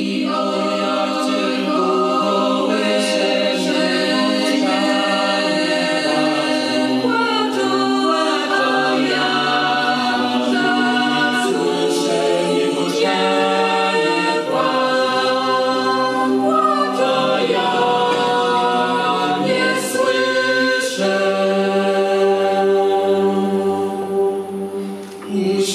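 Unaccompanied choir singing slow, sustained chords, the harmony shifting every second or two.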